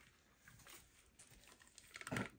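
Near silence, with faint scattered soft ticks as blue glue is poured from a plastic bag into a plastic bin.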